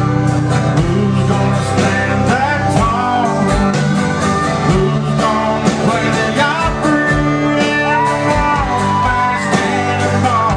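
Live country band playing, with electric and acoustic guitars, drums and organ. A lead line slides and bends between held notes over a steady drum beat.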